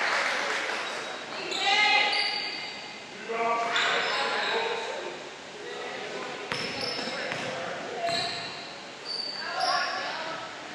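A basketball being dribbled and bounced on a hardwood gym floor during play, with players' and spectators' voices echoing through the hall.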